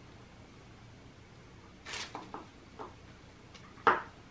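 A few light clicks and taps of forks and spoons against small cups as candies are dipped in melted chocolate, with a sharper click about two seconds in and the loudest near the end, over quiet room tone.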